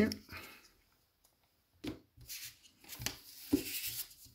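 Trading cards being handled and set down on a playmat: a few short, soft taps and rustles from about two seconds in, after a near-silent pause.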